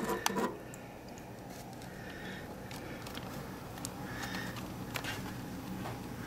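Faint handling noise: a few light clicks and knocks, a cluster in the first half-second and single ones later, over a low steady background hum.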